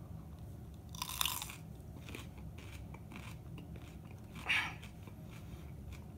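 A bite into a whole raw jalapeño pepper: a crisp crunch about a second in, then quieter chewing of the crunchy pepper flesh, with a short noisy burst a little later.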